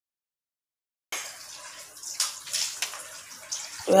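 Running water splashing in a small tiled bathroom, with short irregular splashes over a steady hiss; it cuts in suddenly about a second in after dead silence.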